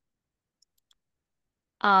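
Near silence with two faint clicks about half a second apart, then a voice starts speaking with an "um" near the end.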